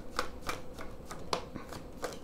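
A deck of tarot cards being shuffled by hand: the cards slide against each other with a scatter of soft, sharp clicks and taps.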